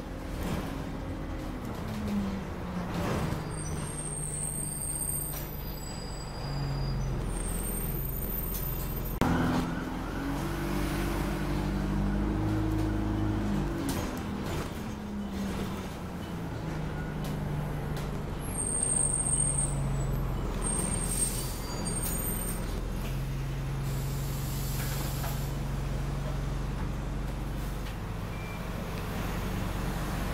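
Alexander Dennis Enviro200 single-decker bus heard from inside the saloon: its diesel engine idles at a stop, then pulls away about nine seconds in, the engine note rising and stepping through automatic gear changes before settling at a steady cruise. A sharp air hiss comes as it moves off, and short high beeps sound twice.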